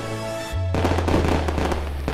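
Fireworks sound effect over background music: a deep boom about half a second in, followed by crackling.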